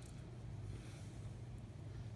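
Quiet room tone with a faint, steady low hum and no distinct event.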